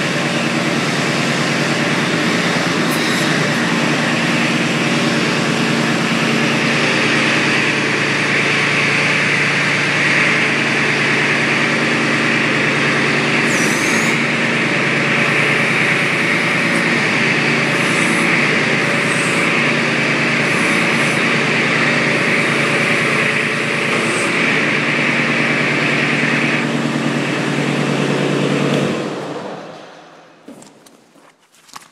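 Kubota B26's 1.1-litre three-cylinder diesel running steadily at throttle. From about six seconds in until near the end, a loud higher hydraulic whine and hiss is added as the backhoe levers are worked. The engine shuts off about a second before the end.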